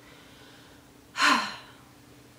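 A woman takes one short, sharp breath about a second in, falling in pitch as it fades.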